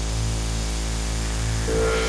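Clubland hard-dance music in a breakdown: a held bass note under sustained synth chords with no beat. A bright new synth line comes in near the end as the track builds back to the drop.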